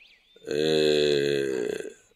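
A man's voice holding one long, drawn-out vowel for about a second and a half, starting about half a second in, level in pitch and dropping slightly at the end.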